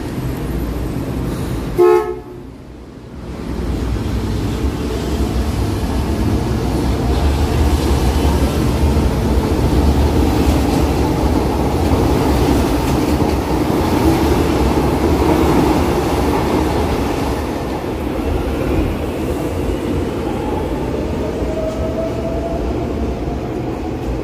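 Metro trains: a short horn toot about two seconds in, then the steady rumble of a train running past, loudest around the middle. Near the end comes a faint rising electric motor whine of a train accelerating.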